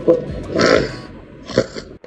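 A woman's rough, throaty rasp, made twice, the second shorter: an attempt at the guttural French R, which she judges still not rough enough.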